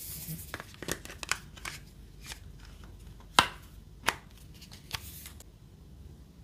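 A Samsung Galaxy S21 Ultra being fitted into a Ringke Fusion case, a hard plastic back with flexible edges: a series of plastic clicks and taps as the phone is pressed in. The two sharpest come about three and a half seconds in and again half a second later, and a brief rubbing of case against phone follows near the end.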